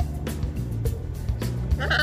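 Background music with a steady beat, and near the end a short harsh squawk from a blue-and-yellow macaw.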